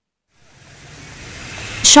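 Silence, then a steady background noise with a low hum fading in and growing louder; a voice starts speaking near the end.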